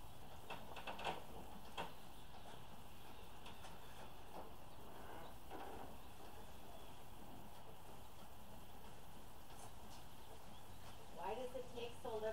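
Quiet steady background hiss with a few light clicks from about half a second to two seconds in. A voice begins just before the end.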